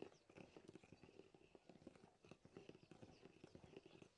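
Faint, rapid, irregular clicking and squelching of a metal stirring stick working thick stiff maize porridge in a pot.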